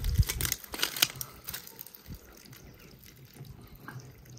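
Handling noises: a run of clicks, knocks and crunches in the first two seconds as the hose is moved about and feet shift on dry, gravelly ground, then quieter, with water trickling from the plastic water butt's open tap.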